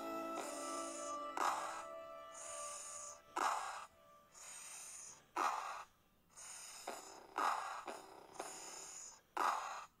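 A voice repeatedly saying the hissing /s/ sound of soft C, five times, each about two seconds apart. Between the hisses comes a short sharp burst, in slowed-down playback.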